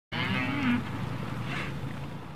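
Beef cattle mooing: one long call in the first second that drops in pitch at its end, then quieter herd noise.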